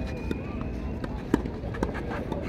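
Tennis ball being struck by racquets in a doubles rally: a few sharp pocks, the loudest about one and a half seconds in.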